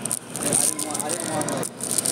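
Indistinct background talk with some light crackling and scraping handling noise.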